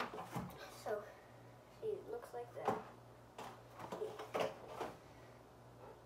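Hard plastic toy figures handled and set down on a wooden cabinet shelf: several sharp knocks and clacks, the loudest a little before the middle and again later on, under mumbled speech.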